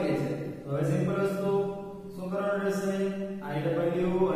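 A man speaking slowly in long, drawn-out syllables held at a fairly level pitch, in three or four phrases with short breaks between them.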